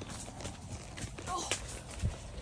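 Hooves of a palomino horse walking on a muddy dirt trail, a few hoof strikes clip-clopping.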